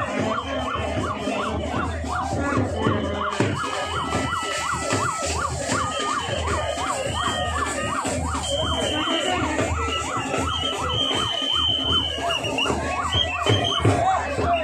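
A siren sounding in quick rising-and-falling yelps, about three a second, with higher steady whistle-like tones coming in over the second half.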